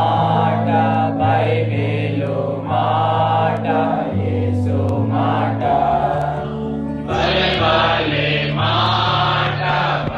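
Group singing of a Christian worship song in a chant-like style over sustained keyboard chords that change every second or so; the voices grow fuller about seven seconds in.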